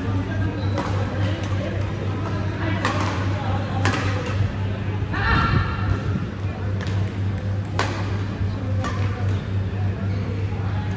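Badminton rackets striking a shuttlecock during doubles rallies: sharp cracks every second or few, over a steady low hum. A brief high squeal comes about halfway through.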